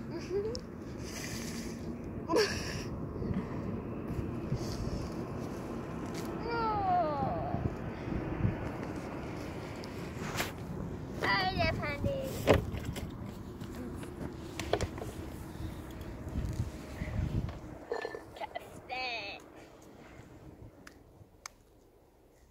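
Short snatches of a child's voice, wordless exclamations and babble, over a low rumble that drops away near the end, with a few sharp clicks along the way.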